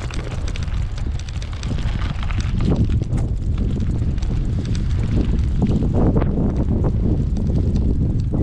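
Wind buffeting the microphone of a camera on a moving bicycle, gusting louder about three seconds in, with scattered clicks and rattles from the bike over cracked pavement.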